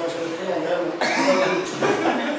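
People talking around a table, with a short cough about a second in.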